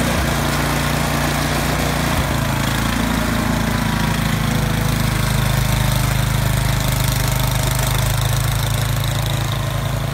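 Gas engine of a two-stage snowblower running steadily as the machine clears snow and throws it out of the chute.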